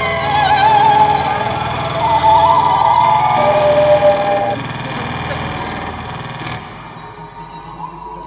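Experimental live music: a sung voice holding long notes with a wide vibrato over a low electronic drone. Both stop suddenly about six and a half seconds in, leaving a quieter held tone with faint scattered clicks.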